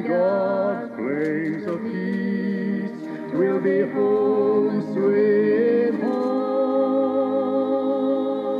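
Two voices singing a slow gospel song in harmony, settling into a long held chord in the second half.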